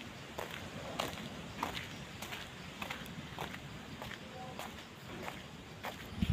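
Footsteps of a person walking, about two steps a second, over a faint steady outdoor background.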